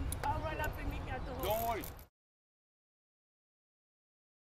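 Indistinct voices of people talking over a low outdoor rumble, cut off abruptly about halfway through, followed by dead silence.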